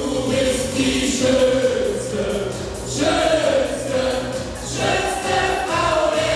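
A man and a woman singing a song together into microphones, with long held notes, over music with a steady beat.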